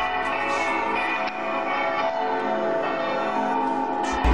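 Church bells ringing, several bells sounding together in overlapping steady tones with occasional fresh strikes.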